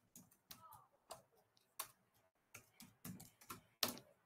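Faint typing on a computer keyboard: a run of irregular keystroke clicks, the loudest one just before the end.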